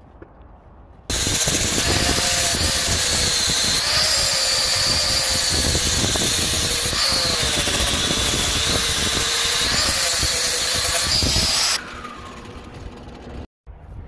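Handheld angle grinder running, its high whine sagging and recovering several times as it is pressed into the steel. It starts about a second in and cuts off sharply near the end.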